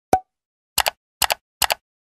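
Sound effects of an animated end screen: a single short pop just after the start, then three quick double clicks, each about half a second after the last.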